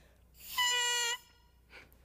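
An oboe reed blown on its own, without the instrument: one squeaking, buzzy held note under a second long, with a breathy hiss, starting about half a second in.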